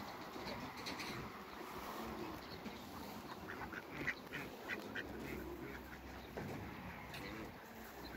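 Domestic ducks calling with a quick run of about five short quacks about halfway through, the loudest near the start of the run, over a low background.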